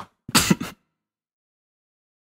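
A person's brief throat clear, a single short vocal sound about half a second in.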